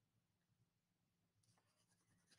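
Near silence: a faint steady room hum, with very faint crayon scratching on paper starting near the end.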